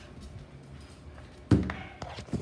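Quiet room noise, then a single sharp thump about one and a half seconds in.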